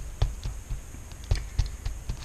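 Distress ink pad dabbed against a wood-mounted rubber stamp, making a handful of light, irregular taps and knocks as the stamp is inked.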